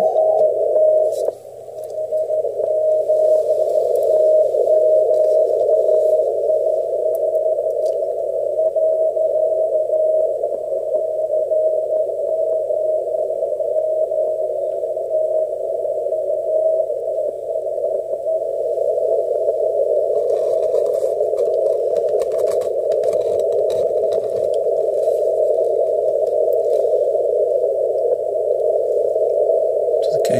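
Icom IC-7300 receiver audio through a speaker: a weak Morse code (CW) beacon keyed as a faint tone just above a narrow band of hiss, passed by a 450 Hz filter. The signal is wavering and fades toward the noise in the second half. There is a brief drop in level about a second and a half in.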